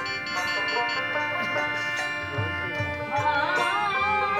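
Live instrumental kirtan music from a devotional troupe: sustained melody instruments holding steady notes, with a drum beating low and a melodic line gliding up and down near the end.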